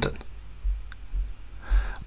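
A short pause in a man's speech: a steady low rumble, a single faint click about a second in, and a soft breath near the end.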